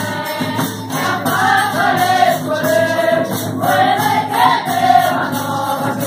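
Folia de Reis troupe singing together in chorus, long held and gliding notes, over a steady percussion beat with tambourine.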